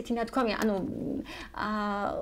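A woman talking, her voice holding one drawn-out sound near the end.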